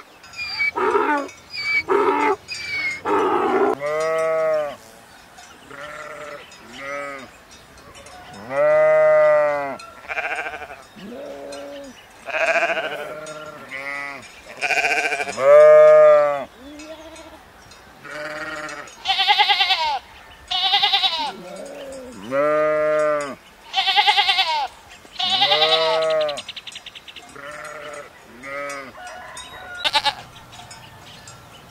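A donkey braying in harsh pulses for the first few seconds, then a long run of bleats from sheep and goats, one call every second or so, some deep and some high and shrill.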